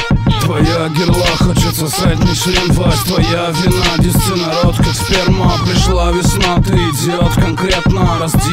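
Russian hip hop track: a rapped vocal over a steady beat.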